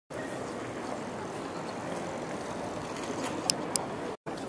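Steady outdoor street noise, with two sharp clicks about three and a half seconds in, a quarter of a second apart.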